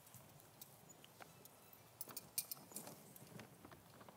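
Faint footsteps of a man walking across a stage, heard as scattered knocks and clicks, with a cluster of sharper ones about halfway through.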